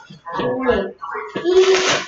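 People laughing in two bursts, the second about halfway through and breathier.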